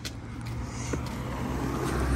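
A car driving past on the street, its tyre and engine noise growing steadily louder, over a steady low hum.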